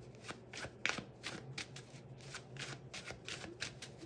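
A tarot deck being shuffled by hand: a quick, irregular run of soft card flicks and snaps, several a second.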